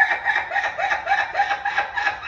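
A woman laughing hard, a long unbroken run of quick, even 'ha-ha' pulses, about four or five a second.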